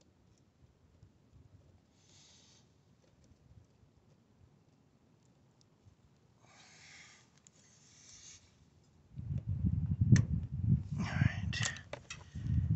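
A 420 roller chain being worked onto a go-kart's rear-axle sprocket by hand: mostly quiet, with a few soft rustles and faint metallic clicks. About nine seconds in a loud low rumbling noise begins, with a couple of sharp clicks in it.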